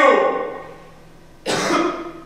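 A single short cough from a man, about one and a half seconds in.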